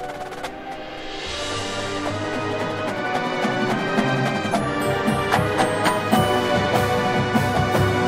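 Marching band brass and woodwinds with front-ensemble marimbas and percussion playing, building in a steady crescendo. Sharp percussion strokes come in thicker about halfway through.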